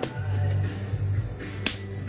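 Background music with low held notes, and one sharp snap or click about three-quarters of the way through.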